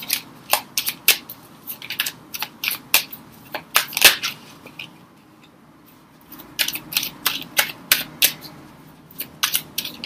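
Tarot cards being handled and laid out: a string of sharp, irregular card snaps and clicks, with a pause of about a second and a half around five seconds in.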